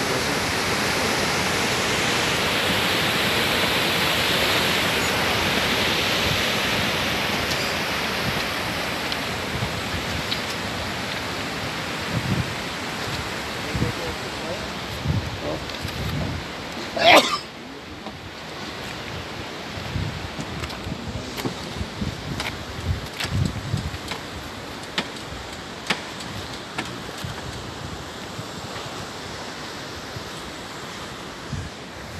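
Muddy floodwater from a typhoon rushing and churning past a concrete wall: a strong current, loud and steady for the first ten seconds or so, then fading. About seventeen seconds in there is a brief, sharp, loud sound, and after it the rush is quieter, with wind knocking on the microphone.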